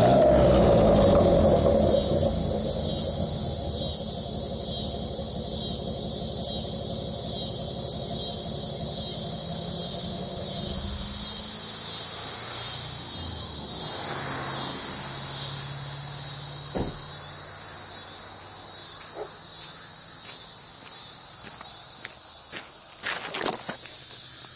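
Pickup truck's engine idling through its new exhaust tips, louder for the first couple of seconds and dropping lower about halfway through. Insects chirp steadily throughout in a fast, even pulsing rhythm, and there are a few handling knocks near the end.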